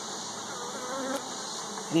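Honeybees buzzing over an open hive box, a steady hum with one bee's drone wavering in pitch near the middle.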